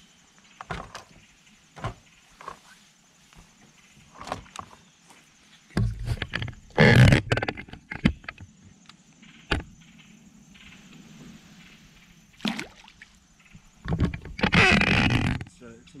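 Scattered knocks and handling noises on a fishing boat, with two louder rushing bursts, one about seven seconds in and one near the end.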